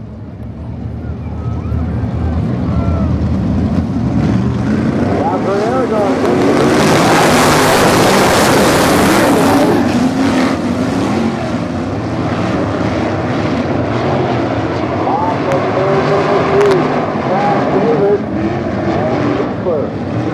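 A pack of sprint car engines revving on a dirt oval. They grow louder over the first several seconds and are loudest as the field passes close about seven to ten seconds in. After that they run on a little quieter, their pitch rising and falling as the cars go around.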